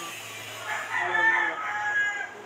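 A rooster crowing once, starting about half a second in and lasting about a second and a half, ending on a held note.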